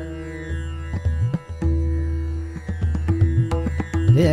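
Tabla playing between sung phrases, the bass drum's strokes bending up and down in pitch, over a steady tanpura drone.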